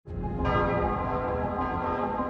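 Bells ringing: a strike right at the start and another about half a second in, their many tones ringing on, over a low rumble.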